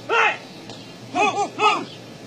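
A person's short, loud shouted calls: one near the start, then three in quick succession about a second in, each rising and falling in pitch.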